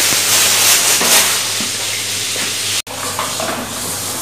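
Food frying in a pan: a steady sizzle that cuts out for an instant about three seconds in, then carries on.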